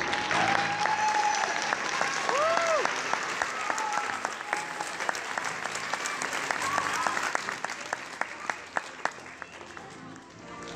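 Audience applauding, with a few voices calling out in the first half; the clapping dies down to scattered single claps near the end.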